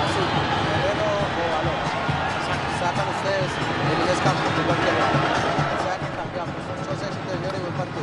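Football stadium crowd, many voices singing and shouting together over a steady low beat of about two thumps a second.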